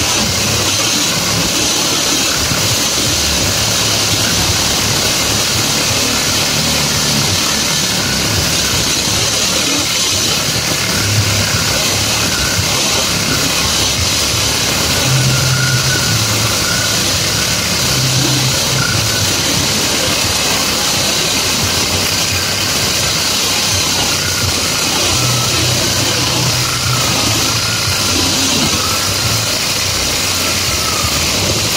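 Cordless power tool running without a break as it cuts through the wires of a roll of welded grid wire fencing, a steady loud noise with a strong high hiss.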